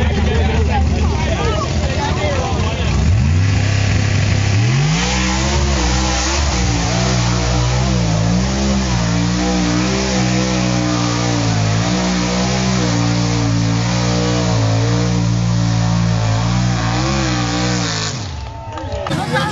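Pickup truck engine revving hard as it is driven through a mud pit. The engine climbs steeply about three to four seconds in, then is held at high revs, its pitch wavering up and down as the throttle is worked.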